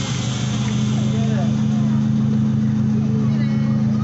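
Miniature park train's engine running with a steady drone, heard from a passenger car.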